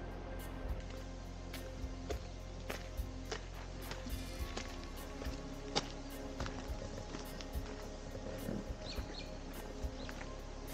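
Quiet background music of soft, sustained held notes.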